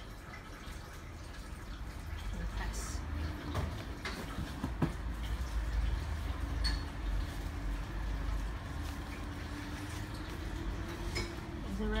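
Light clicks and knocks of a plastic Play-Doh waffle mold being closed, pressed and handled, a few sharp ones about three to five seconds in, over a low rumble; a faint steady low hum runs through the second half.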